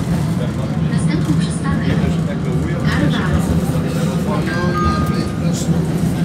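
Tram running, heard from inside the car: a steady low rumble of motors and wheels on the rails with scattered clicks and rattles. About four and a half seconds in, a two-note falling chime sounds.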